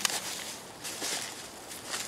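A few soft scuffing, rustling steps in dry grass and dead leaves: one at the start, a couple about a second in, and one near the end.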